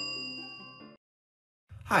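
A bright, bell-like notification chime sound effect rings out and fades over a held music chord. Both die away about a second in, and a voice begins just before the end.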